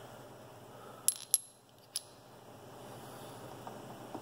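Three light metallic clinks with a short high ring, two close together about a second in and a third just under a second later: steel Belleville washers from a gearbox knocking together in the hand.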